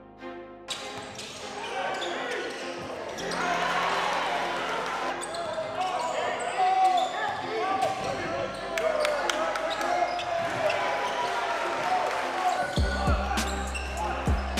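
Live basketball game sound in a gym: many spectators' voices chattering and calling out, with a basketball bouncing on the hardwood court and scattered sharp knocks. A low music beat comes in near the end.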